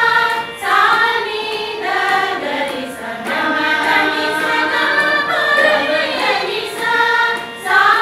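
A group of women singing together, a sung group song in long phrases with brief breaths between them, about half a second in and again near the end.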